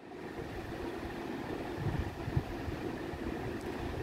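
Steady low background hum of room noise, with no distinct events standing out.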